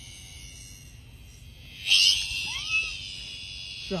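High, steady buzzing from a live insect held in a dog's mouth. It flares into a loud burst of buzzing about halfway through, followed by a couple of short squeaky glides.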